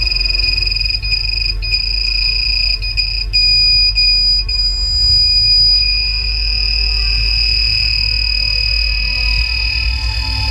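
A steady high-pitched electronic whine from the ECU test bench electronics, over a steady low hum.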